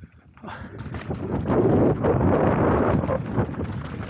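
Mountain bike ride over a rough, rutted dirt trail: knobby tyres on dry dirt and stones with many rattling knocks from the bike over bumps. It grows louder about half a second in and is loudest in the middle.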